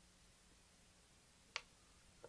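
Near silence, then a single sharp click about one and a half seconds in: a button pressed on a pool pump's control keypad.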